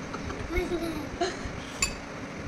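A toddler's laughing voice, then a single bright, ringing clink near the end.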